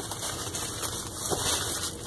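Plastic bubble wrap rustling and crinkling as a hand digs through the packing inside a cardboard box.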